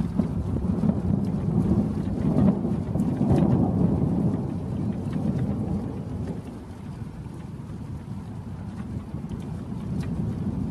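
Thunder: a long low rumble that swells, is loudest about three seconds in, then dies away into a lower steady rumble. Under it runs an even hiss of rain.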